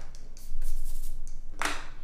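Paper rustling from a hand handling a sketchbook page: soft scattered rustles, then one short louder rustle near the end.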